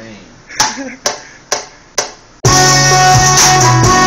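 Four single drum hits, about half a second apart, then a beat starts playing back about two and a half seconds in, loud and steady with heavy bass and a melody.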